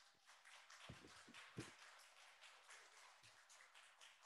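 Faint, scattered hand clapping from a small audience, with two dull thumps about one and one and a half seconds in as a microphone is set into its stand.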